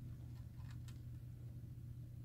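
Steady low electrical hum in a quiet room, with two faint clicks a little under a second in as the power supply's plug is pulled out of a Dell laptop's charging jack.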